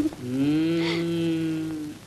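A low male voice holds a single drawn-out note for nearly two seconds, pitch rising slightly and then sinking before it stops.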